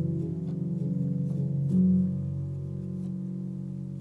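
Solo piano playing a slow, quiet neoclassical piece: low notes held with the sustain and slowly fading, with one soft new chord struck a little under two seconds in.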